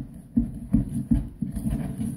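Dull, rhythmic knocks, about two or three a second, from slime ingredients being stirred by hand in a paper cup.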